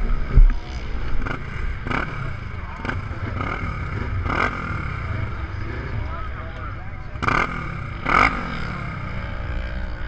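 Race UTV engines idling in a starting line, a steady low rumble, with several short knocks or wind hits on the microphone and faint distant voices.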